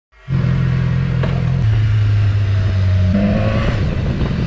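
BMW S1000XR's inline-four engine running as the motorcycle rides off, its pitch stepping down about one and a half seconds in and shifting again about three seconds in.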